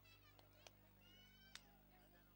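Near silence: a steady electrical hum with faint high, drawn-out voice-like calls, one held for about half a second, and two small clicks.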